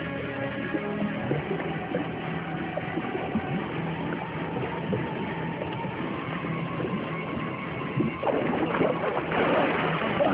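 Background music with long held notes, then from about eight seconds in, loud splashing in a swimming pool as two people thrash up to the surface.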